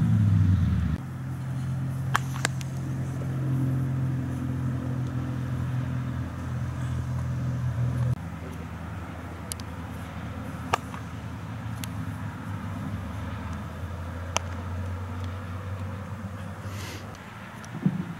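A steady low engine-like hum, as from a motor vehicle running nearby. It changes pitch about a second in and drops in level about eight seconds in. A few sharp, isolated clicks are heard over it.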